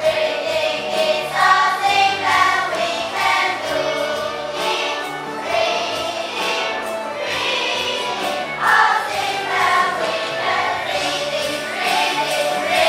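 A class of children singing an English song together as a choir over a recorded backing track.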